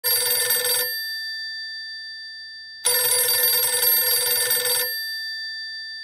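Telephone ringing: two rings, a short one at the start and a longer one of about two seconds beginning about three seconds in, each leaving a ringing tone that dies away slowly.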